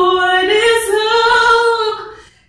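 A woman singing unaccompanied, holding out a long note on the end of a line; about half a second in she steps up to a higher note and sustains it, letting it fade away at the very end.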